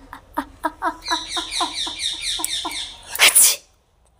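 A woman's voice in quick short gasps, about five a second, building up to one loud sneeze about three seconds in.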